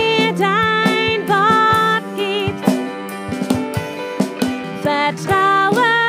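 Live worship song: a woman singing a melody with held, wavering notes over electric guitar and keyboard, with a steady beat.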